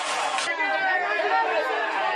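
Several men shouting over one another at once, angrily demanding that a gate be opened.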